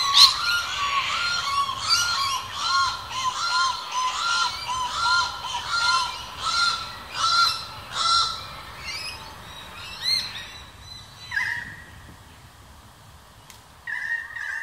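Channel-billed cuckoo calling: a long series of piercing, evenly repeated notes, about one and a half a second, that grow fainter after about eight seconds. This is the call males repeat through the day to advertise on the breeding grounds. Two shorter, higher calls follow near the end.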